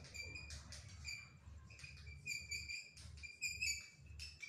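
Faint bird chirping: short, high chirps repeated irregularly, with a few light clicks between them.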